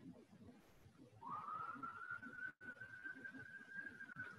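A faint, high whistling tone that slides up in pitch about a second in and then holds steady, with one brief dropout midway, over faint low background murmur.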